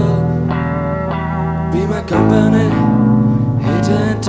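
Live band music from a concert radio broadcast, guitar to the fore, holding sustained chords that change about two seconds in.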